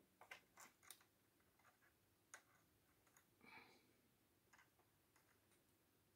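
Near silence with a few faint, light clicks, three in quick succession in the first second and scattered ones after: a metal yarn needle ticking against the plastic hooks of a circular knitting machine as stitches are lifted and pulled.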